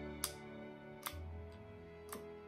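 Quiet background guitar music, with two sharp clicks, about a second apart, from a pistol-grip dosing syringe being worked as it draws up liquid.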